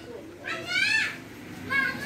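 A child's high-pitched voice calling out in the background, rising in pitch about half a second in, then a shorter call near the end.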